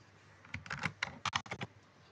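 Typing on a computer keyboard: a quick run of about ten keystrokes starting about half a second in and stopping shortly before the end.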